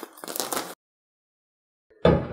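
Thin plastic shrink-wrap crinkling and crackling as it is pulled off a cardboard box. It cuts off abruptly under a second in, followed by total silence.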